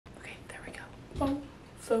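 A woman whispering softly to herself, then a short spoken syllable about a second in, just before louder speech begins.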